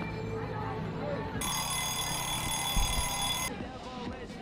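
A steady, high-pitched ringing alarm tone starts about one and a half seconds in, holds for about two seconds and cuts off suddenly, over outdoor crowd chatter.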